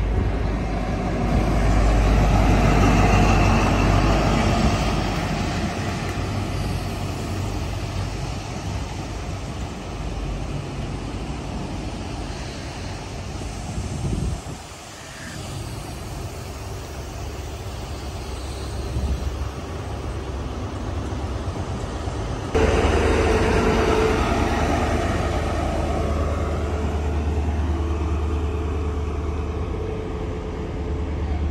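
A GWR InterCity 125 High Speed Train passing at speed: the Class 43 power car's diesel engine and the rush of the Mk3 coaches over the rails, loudest in the first few seconds. About two-thirds of the way in the sound switches abruptly to the steady hum of a Class 43 power car's diesel engine running with the train near standstill at a platform.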